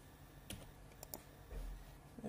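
A few isolated computer keystrokes or clicks, one about half a second in and a quick pair about a second in. A low bump follows near the end.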